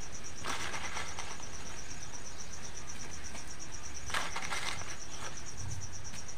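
An insect chirping steadily in a rapid, even, high-pitched pulse, with two brief soft hissing rustles, about half a second in and about four seconds in.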